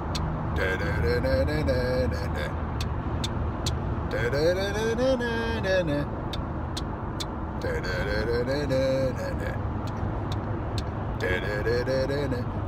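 Steady car engine and road noise inside the cabin. A man's voice sings wordless phrases of a tune over it, about four times.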